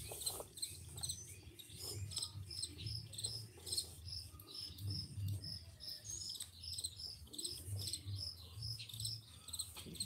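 High-pitched chirping, short even notes repeating steadily about three times a second.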